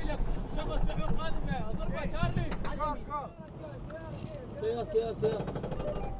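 Men shouting urgent warnings in Arabic inside a moving armoured military vehicle, over the low, steady rumble of its engine, which drops away about halfway through.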